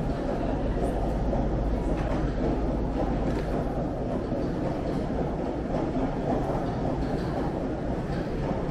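Airport concourse ambience: a steady low rumble of air handling and crowd murmur, with wheeled suitcases rolling over the hard floor.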